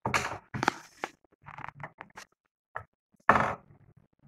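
Crepe paper rustling and crinkling as it is handled and rolled around a wire stem. It comes in several short bursts, the loudest near the end.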